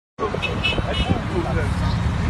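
Several men's voices talking over one another, with road traffic and a low rumble underneath.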